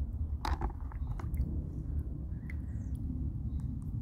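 Small stones being handled: a few light clicks and knocks, clustered in the first second and a half, over a steady low rumble.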